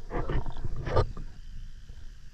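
Underwater: two short rushing bursts of noise, the second the louder, just before a second in. Under them runs a faint steady hum that dies away shortly after.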